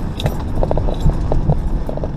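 A 4x4 driving slowly over a rutted dirt track: steady low engine and tyre noise with irregular knocks and rattles from the body and suspension, a few each second, as it rides over the bumps.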